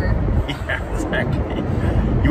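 Steady low road and engine rumble inside a moving car's cabin, with brief laughter and voice fragments from the passengers.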